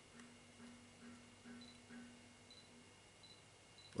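Near silence with faint sounds from a Canon EOS 200D Mark II DSLR being handled at eye level: a low hum that pulses about twice a second and stops around three seconds in, then a few tiny ticks.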